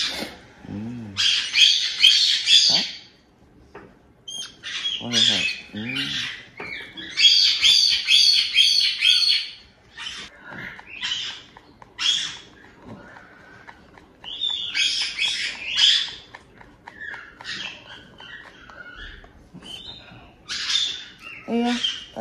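White-bellied caique chick's begging calls during hand-feeding: harsh, rapidly pulsing squawks in bursts of a second or two, repeated several times, loudest around two seconds in and again around eight seconds in.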